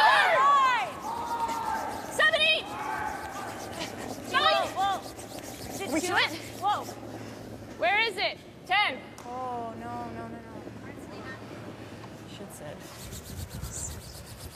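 Curling players shouting short sweeping calls to one another as a stone is delivered and swept down the ice. The steady scrubbing of the brooms on the ice runs underneath.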